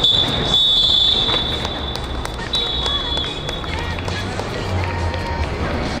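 Referee's whistle blown in two long, steady, high-pitched blasts, the second starting about two and a half seconds in, over voices across the pitch; coming as play stops at the close of the match, it marks full time.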